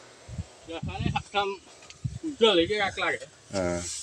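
Brief, indistinct talk from a person's voice in short bursts, with a few low thuds early on.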